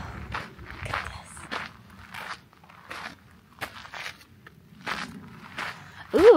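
Footsteps on a sandy, gravelly desert trail, a steady walking pace of about one and a half steps a second.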